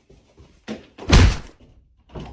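A person running into a closed interior door: a light knock, then one loud, heavy thud of the body slamming against the door.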